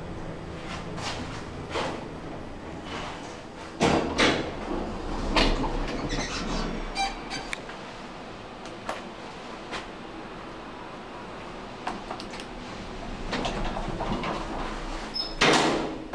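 Lift car sliding doors and door operator of a 1997 Thyssen traction lift running, with a low hum from the lift. Sharp clunks come about four seconds in and again a little later, and the loudest clunk, as the doors shut, comes near the end.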